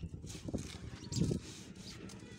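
A steel trowel scraping and scooping wet cement mortar in short irregular strokes, with voices in the background.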